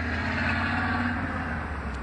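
Steady road-traffic noise, a vehicle passing close by.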